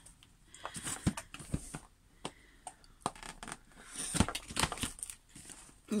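Light knocks, taps and rustles of a cardboard kit box being handled, with the sharpest knock about four seconds in.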